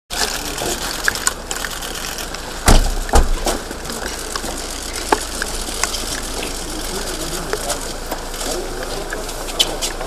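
Outdoor ambience: a steady rushing noise with scattered sharp clicks, and two loud knocks close together about three seconds in.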